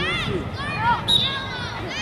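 Young players' and spectators' voices shouting and calling across a soccer field, high-pitched and rising and falling. About a second in there is a sharp knock, followed by a short steady high tone.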